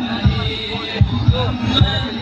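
Low drum beats, several a second in an uneven rhythm, with voices singing or chanting over them.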